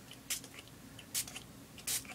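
Hand-pump water spray bottle misting ink on paper: three short hissing sprays.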